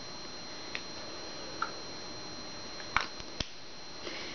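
A lipstick tube handled in the fingers: a few light clicks, the two loudest about three seconds in, half a second apart. Underneath runs a steady hiss with a thin high whine.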